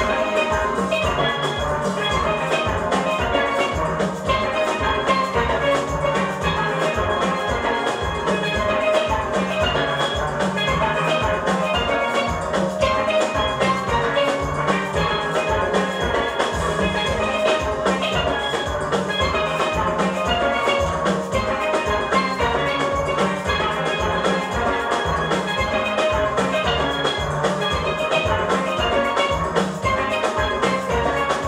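A steel orchestra playing: many steelpans ringing out the melody and chords over bass pans and a drum kit, with a steady, driving beat.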